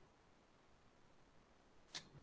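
Near silence: a pause in the speech, broken only by a brief click near the end.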